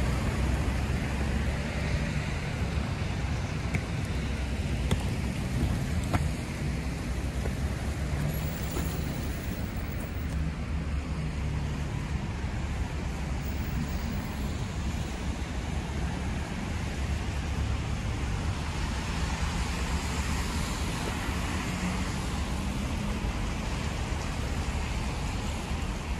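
Steady road traffic on a wet multi-lane avenue: cars and buses passing with a continuous hiss of tyres on wet asphalt over a low rumble.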